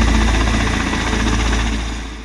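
Kamov Ka-52 attack helicopter hovering low: its coaxial rotors give a rapid, even beat over a deep, steady rumble and hum from its twin turboshaft engines. The sound eases off slightly near the end.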